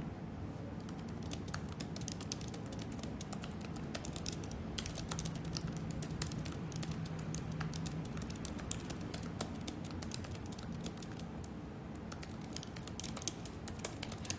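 Typing: a steady stream of quick, irregular key clicks over a low room hum.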